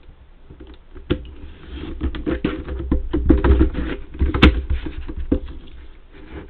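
A laminated sheet being shifted and turned on a paper trimmer: a busy run of rustles, scrapes and light knocks starting about a second in, with one sharp click a little past four seconds.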